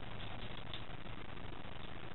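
Steady low hiss and hum of room tone, with no distinct sound event.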